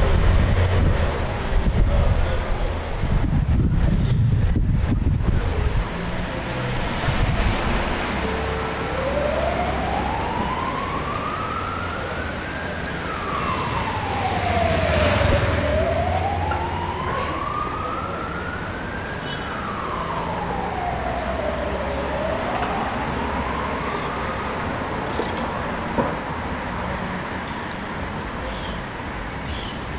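Emergency vehicle siren in a slow wail, rising and falling about twice, starting about nine seconds in and fading out a few seconds before the end, over steady street traffic. A louder rumble of passing traffic fills the first few seconds.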